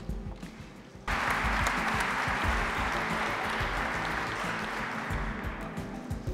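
Audience applause breaking out suddenly about a second in and slowly tapering off near the end, over steady background music.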